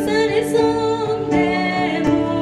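A woman singing into a microphone, holding notes that bend in pitch, over sustained electronic keyboard chords, amplified through a PA.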